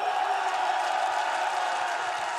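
A studio audience cheering and screaming, many high voices merging into a steady din.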